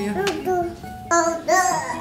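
A young child's high-pitched voice, sing-song vocalizing in two short phrases, the second one louder, over soft background music.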